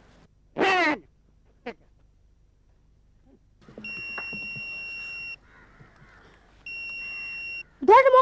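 Two long, steady, high-pitched electronic beeps from a small handheld gadget, the first lasting about a second and a half and the second about a second. A brief falling cry is heard about half a second in.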